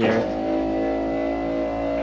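Electric TV lift motor in a fifth wheel's entertainment cabinet, humming at one steady pitch as it lowers the television into the cabinet.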